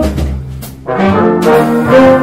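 Big band brass section of trombones and trumpets playing sustained chords in a slow jazz ballad. A held chord ends at the start, a low note carries a brief quieter moment, and the brass comes back in with a new chord about a second in.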